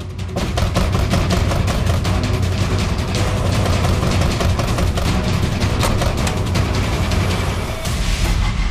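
Tense dramatic background score with heavy, rapid drum and timpani hits over a deep low rumble.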